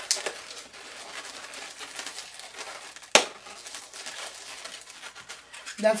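Latex modelling balloons squeaking and rubbing as they are twisted by hand, with one sharp, loud snap about three seconds in.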